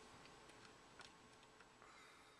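Near silence with several faint, short clicks of a computer mouse, the loudest about a second in.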